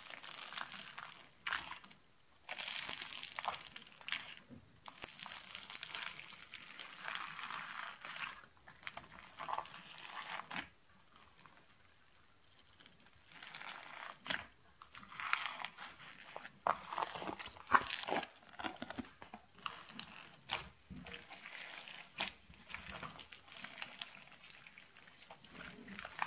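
Hands pressing and squeezing crunchy pink slime packed with foam beads in a plastic tub: a crisp crackling of many small pops as the beads shift and squash, in bursts with short pauses and a quiet gap of about two seconds near the middle.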